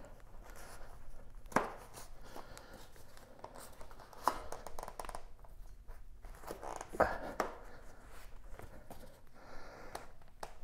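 CushCore foam tire insert being stretched by hand onto a mountain bike rim: foam rubbing and creaking against the rim, with a few brief louder creaks, the loudest about seven seconds in. The insert is a tight fit.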